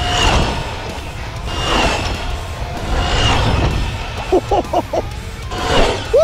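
Background music over the electric whine of a Losi 22S 1/10 drag truck's brushless motor, swelling each time the truck speeds close past, about three times.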